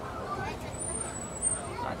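Safari ride truck running slowly, with passengers murmuring in the background.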